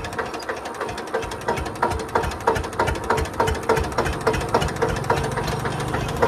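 Tractor engine running, with a regular knock about three times a second over a steady low hum.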